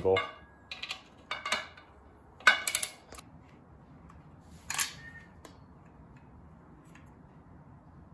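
A few sharp metallic clicks and clacks of a wrench working the bolts of a three-piece wheel, in short clusters over the first three seconds, the loudest about two and a half seconds in. One softer sound follows near the five-second mark, then only faint room noise.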